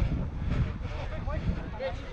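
Wind rumble on a body-worn camera microphone, with faint shouting of players' voices near the end.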